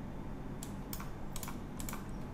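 A handful of short, light clicks from working a computer, spaced unevenly through the second half, over a faint steady low hum.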